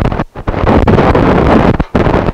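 Loud rubbing and rustling right on the microphone with fine crackles: handling noise as the camera is moved about. It drops away briefly about a third of a second in and again near the end.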